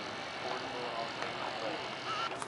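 Indistinct voices of people talking at a distance over a steady outdoor background hum.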